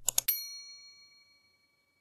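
Two quick mouse clicks, then a single bright bell ding that rings and fades away over about a second and a half. This is a subscribe-and-notification-bell sound effect.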